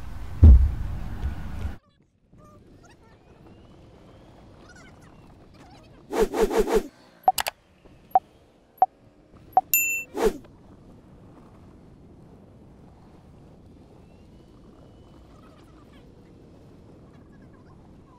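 Sound effects of an animated 'like, comment, share, subscribe' button overlay: a quick run of pops, then several single clicks, a bell-like ding and a last pop, over faint outdoor hiss. A loud low thump comes just before a sudden drop to the quiet bed, about two seconds in.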